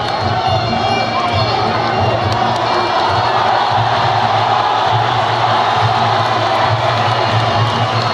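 Crowd of fight spectators cheering and shouting over loud music with a pulsing low beat.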